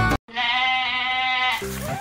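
A single pitched animal call, lasting about a second, starts sharply right after the music cuts off. A different music cue begins near the end.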